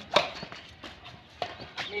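Badminton rackets hitting a shuttlecock during a rally, a series of sharp pops. The loudest comes just after the start, and fainter ones follow about a second in and again near the end.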